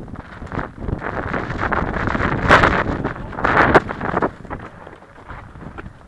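Wind rushing over an action camera's microphone during a mountain bike descent on rocky singletrack, with the bike rattling and its tyres crunching over stones. Two louder bursts of rattle come near the middle.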